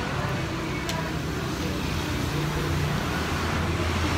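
Steady road traffic noise with a low engine hum, the hum growing a little louder about two and a half seconds in.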